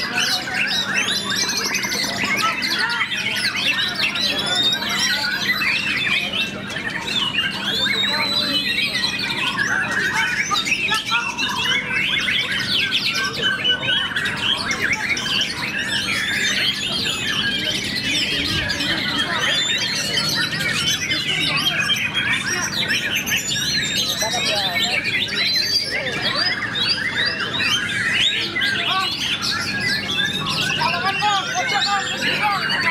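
White-rumped shama singing continuously: a fast, varied stream of whistles, trills and chattering phrases, over a low steady hum.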